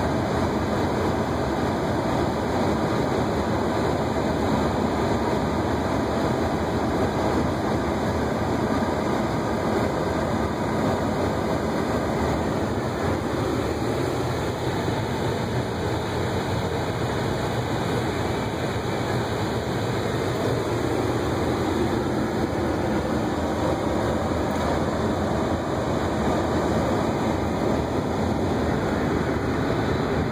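Strong wind blowing hard in a loud, steady rush that hardly lets up.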